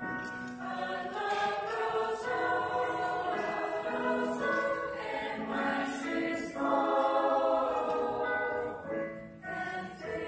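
Mixed choir of young men and women singing a slow choral song in harmony, holding long notes. The sound dips briefly near the end between phrases, then the singing resumes.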